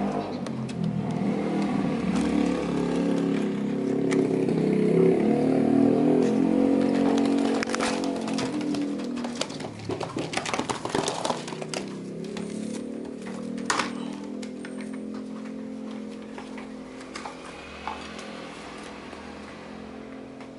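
A steady engine-like drone swells and fades over the first half. It is followed by scattered knocks, rattles and rustles as a hand reaches into a wire pigeon cage and lifts out a young pigeon.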